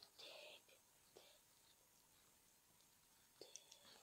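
Near silence, with a brief faint whisper at the start and a few faint clicks later on.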